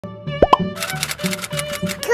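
Two quick rising plop sound effects about half a second in, then a children's intro jingle with a quick, even beat.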